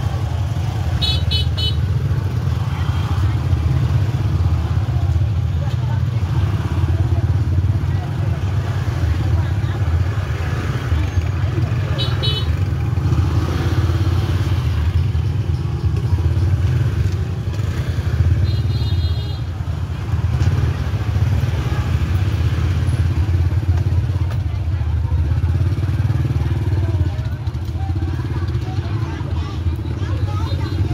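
Small motorbike engines running at low speed close by in a crowded market lane. A motorbike horn beeps three times: briefly about a second in, again near the middle, and a little longer a few seconds after that. Voices of shoppers and vendors chatter underneath.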